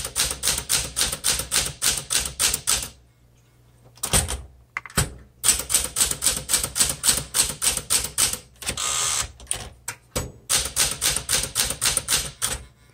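Typing on a 1969 Smith Corona Classic 12 manual typewriter: quick runs of sharp keystroke clacks, about five a second, as the typebars strike the platen, broken by a pause about three to five seconds in. About nine seconds in comes a short rasping slide as the carriage is returned, then the typing picks up again.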